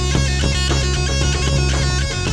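Home-recorded rock trio playing: electric guitar and bass guitar over a steady drumbeat.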